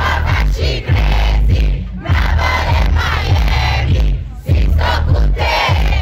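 Live rap concert heard from within the audience: a loud, heavy bass beat through the PA with the crowd shouting and singing along over it.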